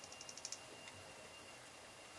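A makeup brush being worked in a loose under-eye setting powder compact gives a quick run of faint clicks, about eight in half a second, that stop just after the start; then only faint room noise.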